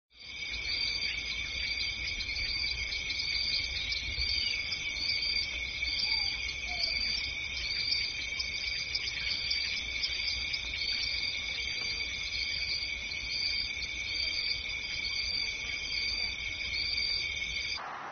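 A steady chorus of insects chirping, several high-pitched trills layered over one another, the highest pulsing in a regular rhythm, over a faint low rumble; it cuts off abruptly near the end.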